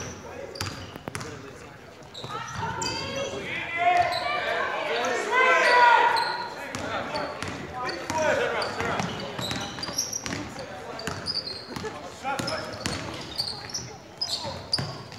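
Basketball bouncing on a hardwood gym floor and sneakers squeaking as players run, with several people shouting, loudest from about three to seven seconds in. All of it echoes in a large gymnasium.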